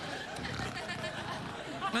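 Studio audience laughing, a dense crowd noise without a single clear voice.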